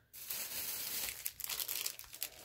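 Crinkling of plastic packaging being handled: a steady rustle for about the first second, then a few scattered crackles.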